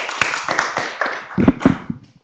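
Audience clapping at the end of a talk, the applause thinning out and dying away toward the end, with two louder thumps about a second and a half in.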